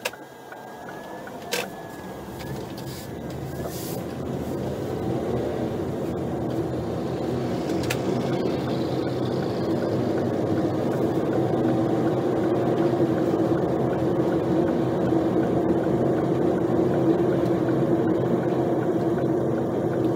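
Car engine and road noise heard from inside the cabin, growing louder over the first ten seconds as the car gathers speed, then a steady cruising drone.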